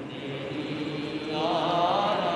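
Devotional Jain bhajan singing, in a brief gap between lines: a faint steady low accompaniment, then about one and a half seconds in a voice starts a held note with a wavering pitch.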